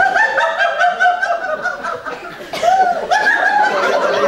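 A woman laughing hard in quick, repeated, high-pitched bursts, easing briefly about two seconds in before picking up again. It is a deliberate, acted laugh, part of a game of laughing in turns.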